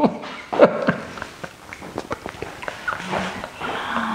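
Short, high, falling vocal squeaks from a person, then a held low hum near the end. Scattered light knocks and scuffs run through it, from two people shifting on a floor mat with an iron bar.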